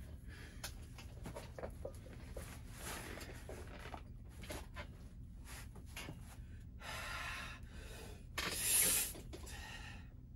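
Breathing of a man bracing under a barbell on a weight bench: short breaths with small clicks and rustles of hands and clothing, then one loud, forceful breath about eight and a half seconds in.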